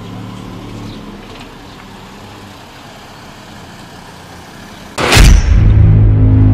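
A car engine running as a Volkswagen Golf drives off, over steady outdoor street noise. About five seconds in, a sudden loud whoosh cuts in, followed by loud, low, droning music.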